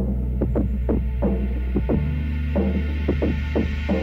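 Nordhavn 43 trawler's diesel engine running in its engine room: a steady, loud low hum with a throb, and short knocks at irregular intervals over it.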